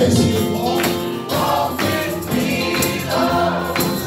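Live gospel hymn singing by a group of singers with keyboard accompaniment. Sharp percussive hits fall on the beat.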